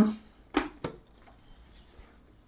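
Two sharp clicks about a third of a second apart as the mirrored face shield of a Spyder Fury full-face helmet is swung down through its detents and shut.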